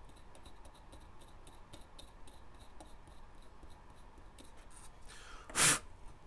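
Faint, quick scratching of a small hand tool scraping clean a freshly soldered joint on a tiny metal model part. Near the end comes one short, loud puff of breath.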